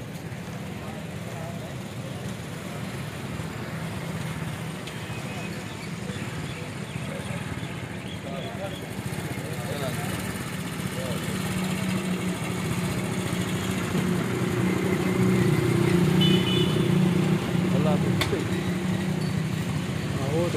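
A steady low engine drone that grows gradually louder, with indistinct voices faintly in the background.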